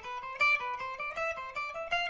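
Electric guitar playing a fast alternate-picked run of single notes, about eight notes a second, edging slowly upward in pitch. A note every few notes is accented just slightly above the others.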